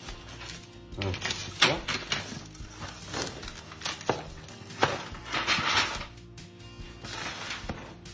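Background music, with a few sharp knocks and a longer scraping sound a little past the middle as a baked pizza is worked out of its baking pan.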